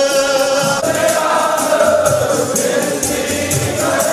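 Sikh kirtan: voices singing a hymn in long held notes over a steady, quick percussion beat.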